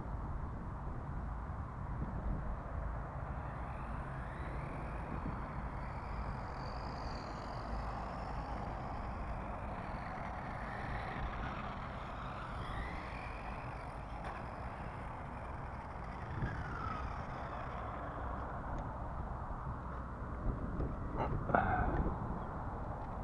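A small battery-powered RC car's electric motor, heard faintly at a distance, whining up and down in pitch as the car speeds up and slows, over a steady low rumble. A short burst of handling noise comes near the end as the car is picked up.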